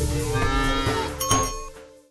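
A cow's moo, played as a sound effect over the closing bars of intro music, which fades out near the end.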